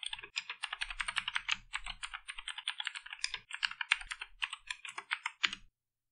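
Typing on a computer keyboard: a quick, steady run of keystrokes that stops about five and a half seconds in.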